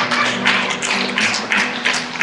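Acoustic guitar strummed in a steady rhythm, each stroke sharp against the ringing chords.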